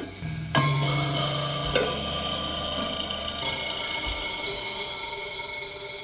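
Giant handmade African thumb piano (kalimba) with long metal tines, plucked three times in the first two seconds, the second pluck bringing in a strong low note. The notes ring on together in a long, slowly fading sustain of many tones.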